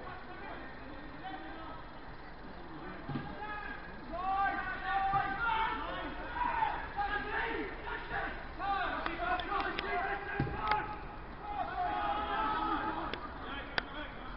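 Distant shouted calls from footballers on the pitch, too far off to make out, over a steady outdoor hiss, with one sharp thud about ten seconds in.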